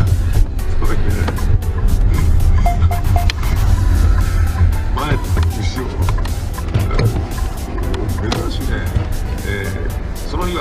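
Loud, steady low rumble of a vehicle on the move, picked up by a dashcam, under background music, with scattered light knocks.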